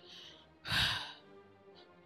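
A woman's short sigh, a breathy exhale of about half a second a little before the middle, over quiet background music.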